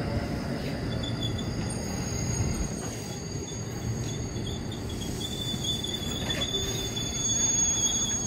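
KRL Commuter Line electric train rolling past with a steady low rumble of wheels on rail. A high-pitched wheel squeal comes in briefly about a second in and returns more steadily from about five seconds in.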